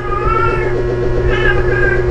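Two short high meow-like calls, each rising and falling, about half a second long, over a steady low hum.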